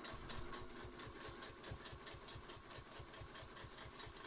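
High-shank computerized sewing machine stitching steadily, its needle going up and down at a rapid even rhythm while ruler-work quilting is sewn along a quilting ruler.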